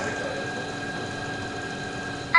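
Motorised food-delivery rail running steadily as it carries a plate along the counter: an even mechanical whir with a thin high whine held on one pitch.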